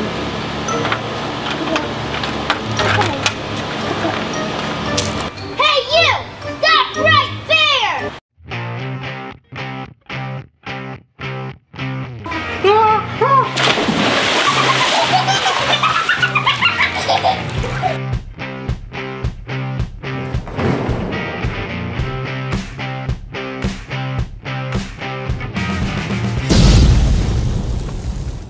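Background music with a beat that stops and starts in short repeated cuts; about halfway through, a loud splash of a person jumping into a swimming pool.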